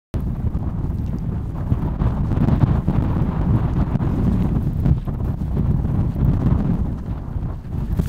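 Strong desert sandstorm wind buffeting the microphone: a loud, gusting low rumble.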